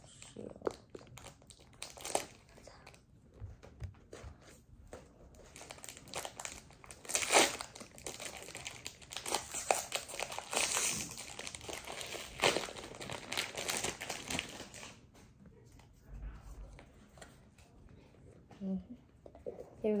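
Foil Pokémon booster pack wrapper crinkling and crackling in a child's hands as it is worked open, in irregular rustles that are loudest around the middle and die down in the last few seconds.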